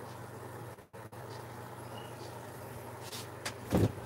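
A steady low hum that drops out briefly about a second in, with a few clicks and low knocks near the end.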